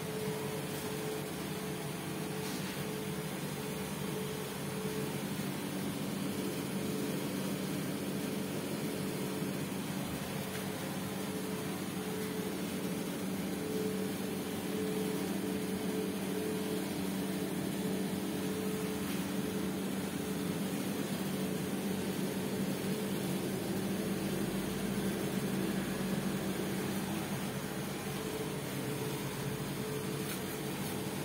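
Steady electric hum of the smoking cabinet's small circulation fans running, a low, even drone that does not change.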